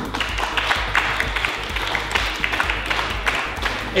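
Applause: a group of people clapping their hands.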